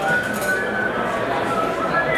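Indistinct voices of people talking around a large hall, with a light metallic clinking or ringing near the start.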